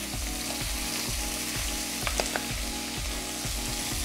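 Cubes of stewing beef sizzling steadily in hot oil in a non-stick wok as they are seared, with a couple of sharp clicks of metal tongs against the pan about two seconds in.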